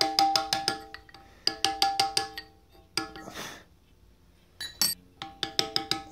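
Brass-headed carving mallet tapping a steel chisel into Indiana limestone, hand-carving a rosette: quick bursts of light strikes, about six or seven a second, each with a ringing metallic clink, separated by short pauses. A brief hiss sits in one pause about three seconds in.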